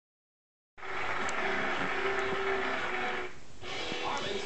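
A steady rushing noise from the promo's soundtrack, heard through a television's speaker. It starts abruptly out of silence just under a second in and dips briefly near the end.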